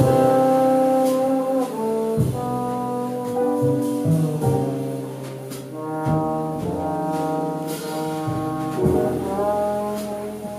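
Trombone playing a jazz melody line of held notes that change pitch every second or so, with piano, upright bass and drums accompanying in a small jazz combo.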